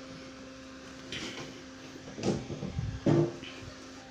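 Steady low hum from a home-built transistor power amplifier idling into a 15-inch speaker, with no music playing. A few short snatches of sound come about one, two and three seconds in.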